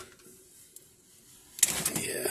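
Hands handling a 3D-printed wood-PLA part: low for the first second and a half, then a sudden burst of plastic clicks and rustling.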